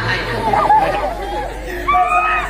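Speech: voices talking, with chatter behind them.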